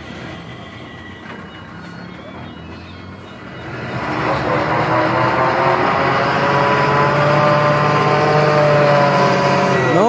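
Loaded lorry's diesel engine idling low, then revving hard from about four seconds in and pulling under heavy load, its pitch sagging slightly as it labours.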